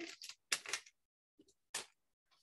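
A few brief, faint rustles and clicks from handling craft supplies, as a glue dot is peeled off and pressed onto felt, with near silence between them.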